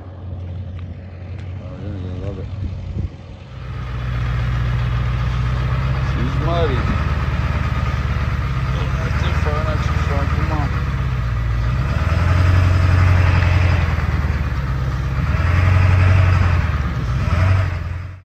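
Cat 259D compact track loader's diesel engine running loud and steady as the machine works across mud, revving up twice under load in the second half.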